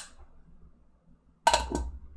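A sudden knock with a short clinking rattle about one and a half seconds in, after a quiet stretch: a fan brush being dipped in and tapped against a container of paint thinner.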